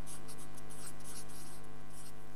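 Felt-tip marker writing on flip chart paper in short strokes, over a steady electrical hum.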